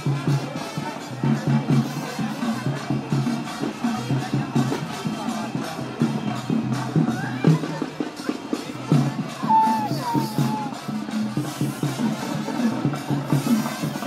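Rhythmic drumming and percussion music for a kavadi dance, with crowd voices mixed in. A short wavering higher tone rises over it about ten seconds in.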